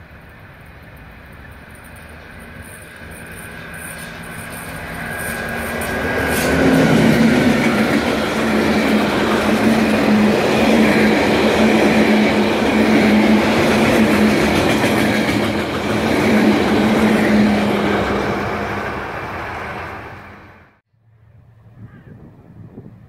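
Freight train of loaded log wagons approaching and passing close by. The rumble and clatter of wheels on rail grow louder over the first six seconds, stay loud over a steady low hum, and then cut off suddenly near the end.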